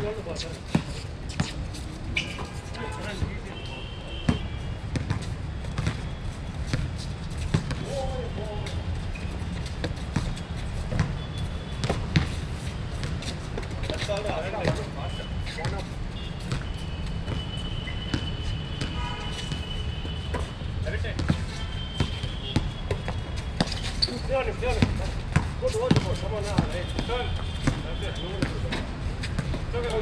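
Basketball bouncing on a hard outdoor court during a pickup game, with sharp, irregular bounces throughout and players' voices calling out now and then.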